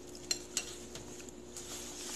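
A metal fork lightly clinking against a ceramic bowl a couple of times, then scraping softly through the stir-fried squash, over a faint steady hum.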